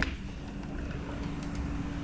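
A sharp click from the sliding balcony door being pushed open, then a steady low hum of urban outdoor background.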